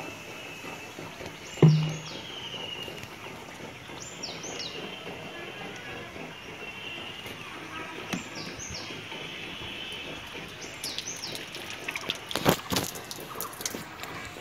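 Birds chirping in short calls that fall in pitch, over steady outdoor background noise. A single sharp knock about two seconds in and a quick cluster of clicks and knocks near the end come from handling the plastic water-filter housing and PVC fittings.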